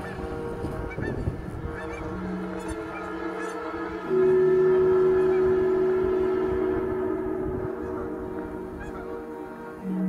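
Canada geese honking in flight, mixed with ambient music of long held notes. A loud sustained note comes in about four seconds in and slowly fades.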